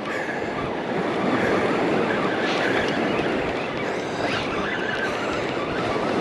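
Spinning reel being cranked steadily while reeling in a hooked fish, with the wash of surf behind.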